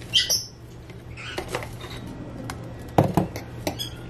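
A utensil scraping sofrito out of a plastic tub and clinking against a steel cooking pot: scattered scrapes and clicks, with a couple of sharp knocks about three seconds in.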